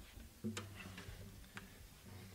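Faint, irregular clicks and knocks from an acoustic guitar being handled just before playing, with a low string ringing softly after one knock about half a second in.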